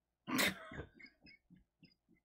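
A person bursting out in a loud, breathy laugh about a quarter second in, followed by short, fading laugh pulses about three a second.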